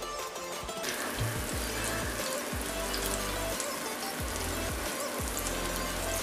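King fish steaks sizzling and crackling in hot oil on a flat pan. The sizzle comes in about a second in and holds steady, with background music under it.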